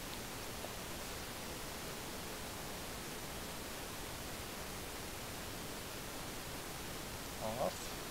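Steady, even hiss of room tone and recording noise, with no distinct sounds in it.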